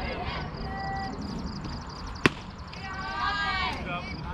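A softball pitch smacking into the catcher's leather mitt about halfway through, a single sharp pop and the loudest sound, with voices calling out around it.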